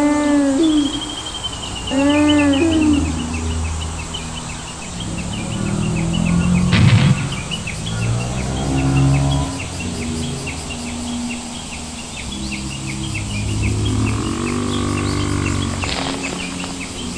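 Two low, pitched bellowing calls from an animated sauropod, each rising and then falling, about two seconds apart. Birds and insects chirp steadily throughout, and from about four seconds in, soft background music holds low notes, with a brief sharp knock near the middle.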